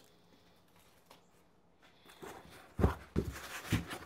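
A cardboard shipping box being handled: after a quiet start, rustling and a few dull thumps from about halfway in as hands reach into the box.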